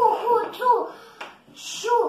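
A young girl's voice reading Russian syllables aloud quickly, one after another, as a timed reading drill, with a brief pause about halfway through.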